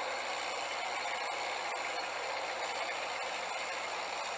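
Steady hiss with a few faint scattered clicks: the surface noise of an old film soundtrack.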